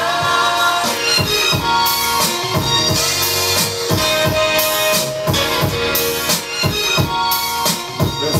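Sample-based hip-hop beat played on an Akai MPC 1000 drum machine/sampler: drum hits on a steady beat under a chopped keyboard sample.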